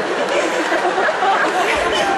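Indistinct voices: muddled talking mixed with crowd chatter, with no single clear word.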